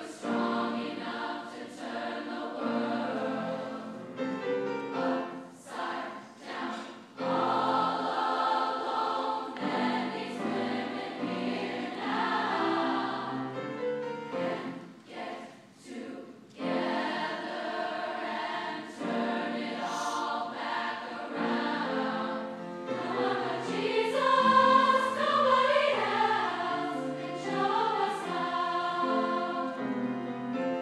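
Large choir singing sustained chords, breaking off briefly between phrases twice. It swells louder in the last third.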